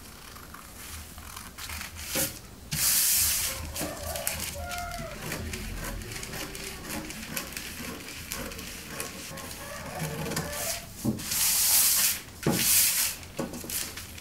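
Scissors cutting a sheet of brown pattern paper: a run of snips along a drawn line, with crisp rustling and crinkling of the paper as it is handled. The loudest moments are bursts of paper rustle about three seconds in and twice near the end.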